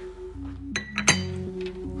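A porcelain cup clinking against its saucer three times, in quick succession about a second in, each strike ringing briefly, over soft sustained background music.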